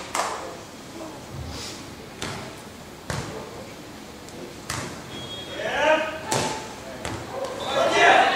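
A beach volleyball being struck by hand during a rally: about five sharp hits a second or so apart, as it is served, passed, set and attacked. Players shout calls between the later hits.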